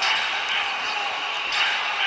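Live basketball court sound: a ball being dribbled on a hardwood floor over a steady hiss of arena noise.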